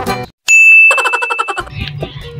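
Guitar background music cuts off a fraction of a second in. After a brief silence, a bright, ringing ding sound effect sounds about half a second in and fades after about a second.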